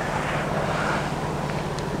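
Steady low hum inside a car's cabin, with a soft rushing noise that swells slightly about half a second in.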